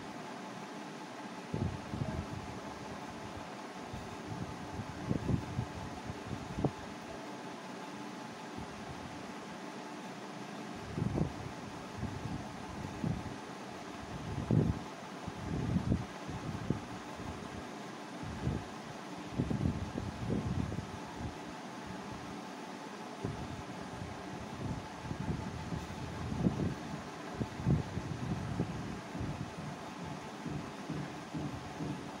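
Steady background hum and hiss, like a running fan, with irregular low rumbles and thumps scattered throughout.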